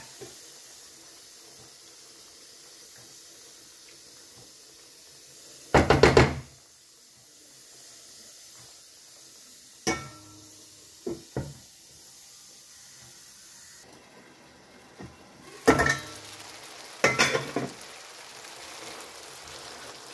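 Cookware knocking and clattering while a pan lid is handled: a few sharp knocks, the loudest about six seconds in, small clicks a few seconds later and two more knocks near the end. Underneath, a potato and tomato stew simmers faintly and steadily in the pan.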